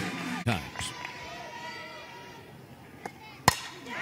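A softball bat striking a pitch with one sharp crack about three and a half seconds in, driving the ball deep. Low crowd noise from the stands lies under it.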